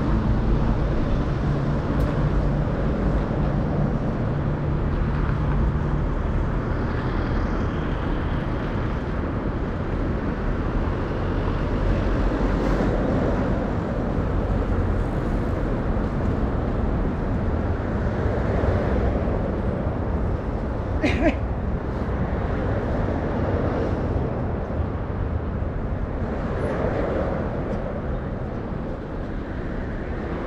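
City street ambience: steady road traffic going by, with a low engine hum in the first few seconds and a short sharp click about two-thirds of the way through.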